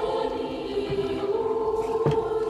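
Orthodox church choir singing the response to a litany petition in long held chords; the chord dips about half a second in and returns about a second later.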